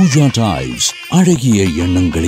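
A voice in an advertising jingle, its pitch gliding up and down from syllable to syllable.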